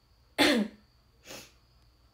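A young woman coughing into her fist: one loud cough about half a second in, then a second, quieter cough a second later.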